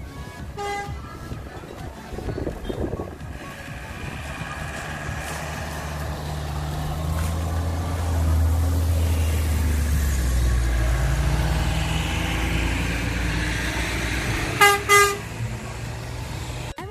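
A convoy of military trucks and armoured vehicles driving past, the engine drone growing louder as a heavy truck comes close. Two short horn toots near the end.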